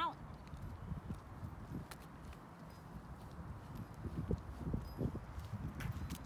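Outdoor ambience: an irregular low rumble, typical of wind on the microphone, with a few faint clicks.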